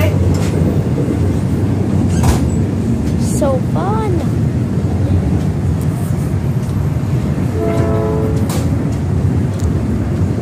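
Steady rumble of a South Shore Line electric commuter train car running along the track, heard from inside the car, with a few sharp clicks from the rails. About eight seconds in, a short steady tone sounds for under a second.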